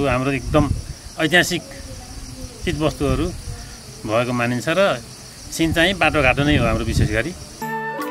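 A man talking, over a steady high chirring of insects. Near the end it cuts abruptly to music.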